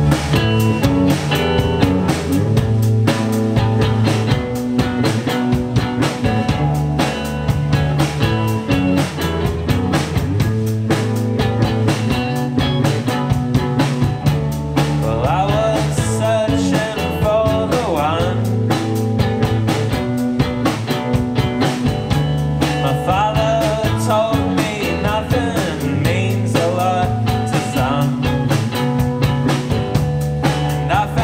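A live rock band of acoustic guitar, electric bass and drum kit playing a steady-tempo song, with a voice singing over it from about halfway through.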